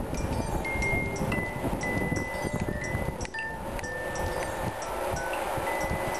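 Background music: a chiming melody of held high notes stepping from pitch to pitch over a light tick about two and a half times a second. Under it is a rumble of wind and road noise from the moving bicycle.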